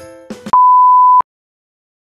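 A single loud electronic beep, one pure steady high-pitched tone lasting well under a second, that cuts off suddenly, coming right after the last notes of background music.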